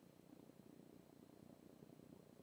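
Near silence: faint low room tone or line noise.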